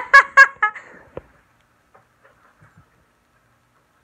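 A toddler squealing in about four quick, loud, high-pitched bursts in the first second, then only faint rustling.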